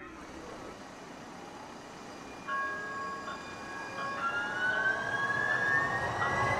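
Electric streetcar's traction motors whining as it moves off, over steady road noise. A pair of steady tones comes in about halfway through, and a whine then climbs slowly and evenly in pitch toward the end.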